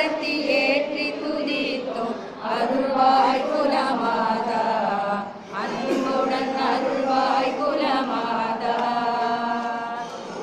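A group of women chanting a Hindu devotional prayer together in a steady, sung recitation, with a brief pause about five and a half seconds in.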